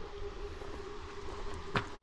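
Low, steady background noise with a faint constant hum, and a single short click near the end.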